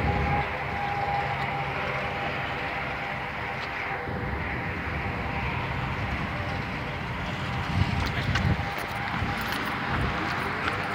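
Road traffic noise: a steady hum of vehicle engines and tyres, swelling briefly about eight seconds in.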